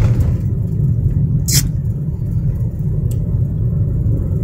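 Steady low rumble of a car driving at low speed, heard from inside the cabin, with a brief sharp click about one and a half seconds in.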